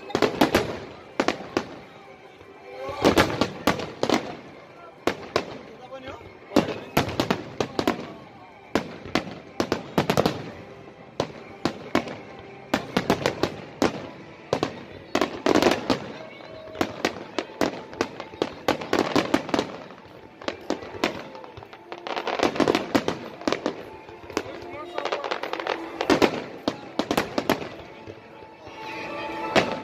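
Fireworks display: volleys of sharp bangs and crackling shell bursts, arriving in clusters every two to three seconds.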